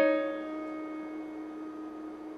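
Digital keyboard with a piano sound: a note struck at the start and held, ringing together with a lower held note, both slowly fading. The two notes sound the minor-seventh interval E-flat to D-flat.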